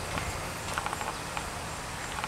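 Faint, scattered footsteps on a dirt forest path, over a low, steady outdoor background.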